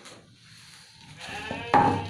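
A domestic sheep bleating, starting about halfway through and loudest near the end: a sheep calling out in its pen at feeding time.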